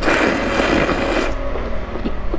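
Thin noodles in broth being slurped up into the mouth: one loud, wet, crackling slurp lasting just over a second, then softer.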